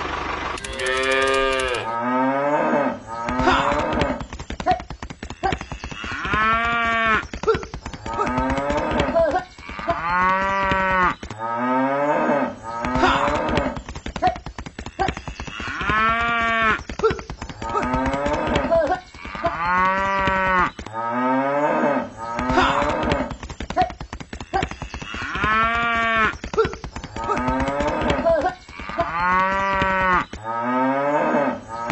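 A cow mooing over and over, long calls that rise and then fall in pitch, one every two to three seconds, starting about two seconds in.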